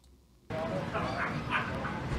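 Near silence, then about half a second in a live press-conference feed cuts in: steady room ambience with faint distant voices.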